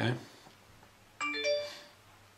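A short chime of three quick rising notes, starting about a second in and fading within about a second.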